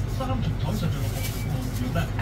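A voice talking over a steady low hum, with no clear chopping strikes.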